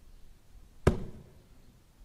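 A single sharp knock a little under a second in, dying away quickly, against faint room tone.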